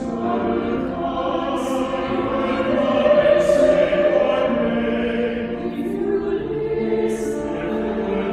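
Mixed church choir singing a slow piece in sustained notes, with a few crisp 's' consonants sung together.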